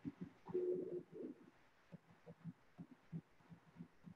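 A quiet pause on a video-call audio feed: only faint, short low knocks and a brief faint hum about half a second in, with no words.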